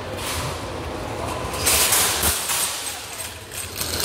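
A metal wire shopping cart pulled from a nested row and pushed across a concrete floor: the basket rattles and the wheels rumble, loudest about two seconds in, then quieter.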